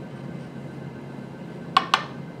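A small glass beaker clinks twice in quick succession near the end, two sharp clicks with a brief ring, as it is handled on the bench. Before that there is only low room noise.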